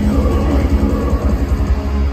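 Heavy metal band playing live at full volume, dense and bass-heavy, heard from within the crowd in a large hall.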